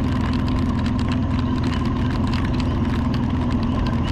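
Motorcycle engine running at a steady cruise, its note holding constant, with wind and tyre noise from a wet road.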